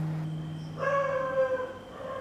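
A low acoustic guitar note rings on and fades. About a second in, a drawn-out whine, slightly falling in pitch, lasts about a second.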